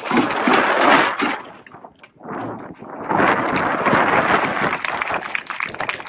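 Loud crowd din from a gathering of children and adults, with clapping, in two bursts that drop away briefly about two seconds in.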